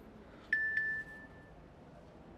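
Message notification chime: two quick pings on the same high note about a quarter second apart, the second ringing on for about a second.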